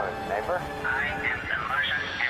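A person's voice talking.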